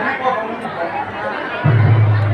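Voices of a live stage play in a hall, with audience chatter; near the end a loud, steady low musical tone comes in suddenly.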